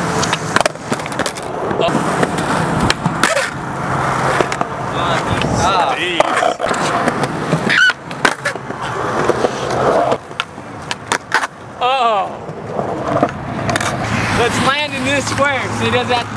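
Skateboard wheels rolling over concrete, broken by sharp clacks of boards popping and landing as skaters do flip tricks.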